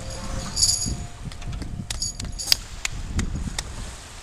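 Small metal bells jingling in scattered shakes, with a few sharp clicks, while a faint held note from the music fades out.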